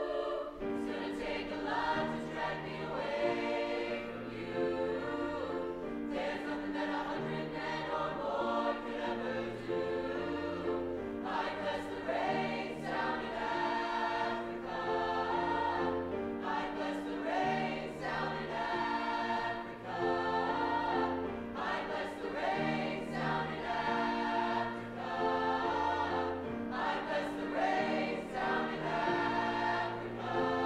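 Mixed-voice choir singing in harmony, held chords moving from one to the next at a steady, even level.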